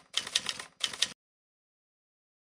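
Typewriter keystroke sound effect: a rapid clatter of key strikes in a few quick runs, stopping abruptly about a second in.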